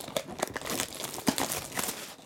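Clear plastic shrink wrap on a trading-card box crinkling and tearing as it is stripped off by hand, in quick irregular crackles.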